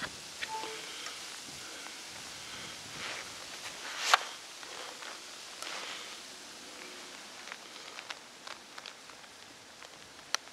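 Handling noise from a plastic lantern, a USB charging cable and a phone: scattered light clicks and jacket rustle over faint outdoor background, with one sharper click about four seconds in as the cable is plugged in.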